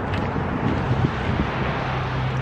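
Wind rumbling on the microphone over a steady low engine hum.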